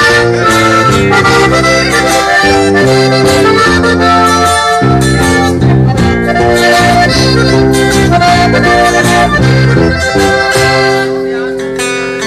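Live norteño band playing an instrumental break: a Gabbanelli button accordion carries the melody over strummed acoustic guitar and a walking bass line.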